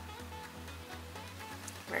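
Soft background music with a steady bass and a light repeating melody; a woman's voice begins just at the end.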